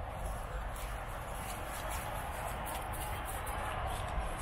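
Steady outdoor background noise: a low wind rumble on the microphone under a faint even wash, with a few light rustling steps through grass about two and a half to three seconds in.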